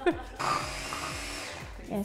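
Small electric hand chopper's motor whirring with a load of beetroot and radish for over a second, trailing off and stopping near the end.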